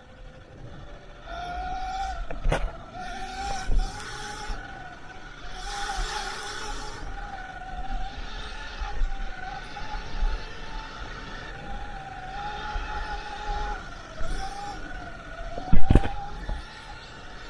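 Sur-Ron electric dirt bike's motor whining at a steady pitch that drifts slightly up and down with speed, under way on a dirt track. Occasional knocks break in, the loudest a sharp thump near the end.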